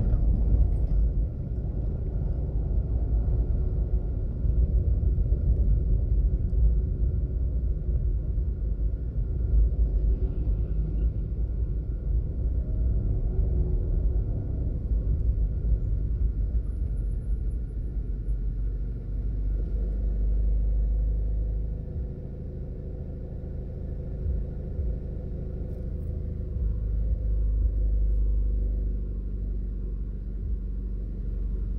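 Road and engine noise of a car driving, heard from inside the cabin: a steady low rumble that eases off in the second half as the car slows in traffic.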